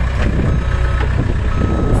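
Diesel engine of a Case backhoe loader running steadily, with a reversing alarm beeping about once a second over it.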